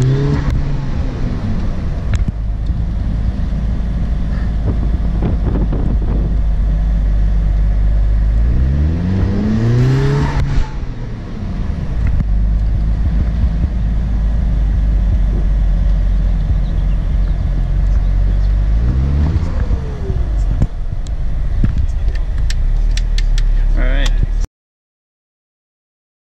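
Audi TTS's turbocharged four-cylinder engine heard from inside the cabin over wind and road noise. Its pitch climbs as the car accelerates just after the start, again about nine seconds in and again about nineteen seconds in, with steady running in between.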